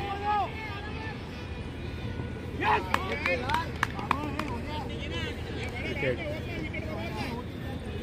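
Voices of players and spectators calling out and chattering across an outdoor cricket ground as a wicket falls, with a few sharp clicks about three seconds in.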